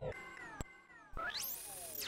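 Experimental electronic ambient music: faint synthesized tones gliding downward, a single click, a brief drop to near silence, then a tone sweeping steeply upward and falling back.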